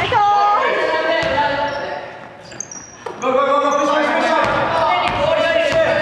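Players' voices calling out across a gym, over a basketball bouncing on the wooden floor, with a quieter spell about two seconds in.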